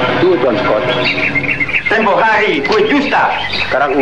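Birds chirping in the background under voices talking, from an old film soundtrack.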